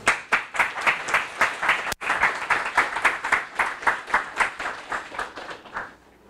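A small audience clapping, a run of distinct, closely spaced claps that thins out and stops just before the end. There is a momentary dropout in the recording about two seconds in.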